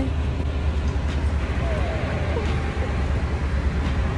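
Steady low rumble of outdoor background noise, with faint voices.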